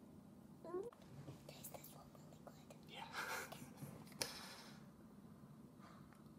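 Faint whispering in a quiet room, with a short rising voice squeak just under a second in and a brief noisy burst a little after four seconds.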